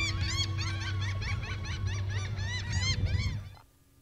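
Gulls calling over and over, with many calls overlapping, above a low, steady hum of idling boat engines; both fade out about three and a half seconds in.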